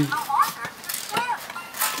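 A child's short high-pitched vocal sounds, twice, with a few faint light clicks from a cardboard toy box and tissue paper being handled; an adult voice begins right at the end.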